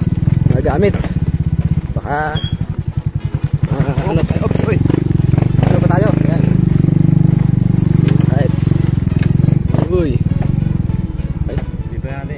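Small motorcycle engine running with a rapid, even firing beat, louder in the middle and easing off near the end; short bits of talk come over it.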